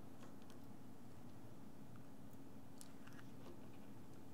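A few faint, small ticks and clicks of a precision screwdriver turning out a tiny Phillips screw inside an opened iPhone 7, over a steady low room hum.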